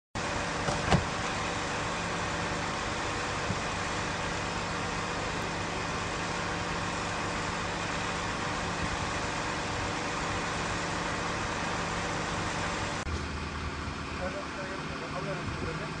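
Steady running motor-vehicle noise with a constant hum, and a short sharp click about a second in. About thirteen seconds in the drone drops off abruptly, leaving a quieter background.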